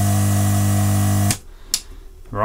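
Steady electric hum with a buzzy string of overtones from the electric tool used to heat the part, cutting off suddenly a little over a second in. A faint click follows.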